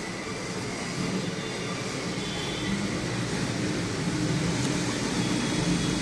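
Steady background hum and hiss, growing slowly louder, with no clear events.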